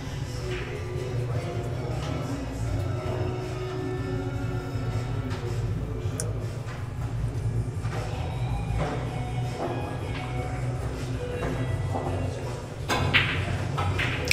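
Faint background music over room hum, then about a second before the end a hard-hit pool shot: the cue strikes the cue ball with full power and the balls crack together.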